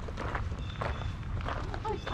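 Footsteps crunching on a gravel driveway, a run of short irregular steps.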